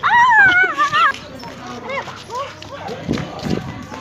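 A loud, high, wavering cry lasting about a second, followed by a few short, rising yelps.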